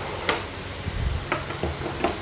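A few light, separate clicks and knocks over a faint steady background hum.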